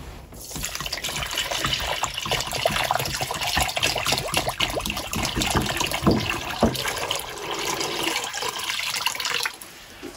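Water pouring steadily from a plastic jug into a rubber bowl, splashing as the bowl fills. It starts about half a second in and stops shortly before the end.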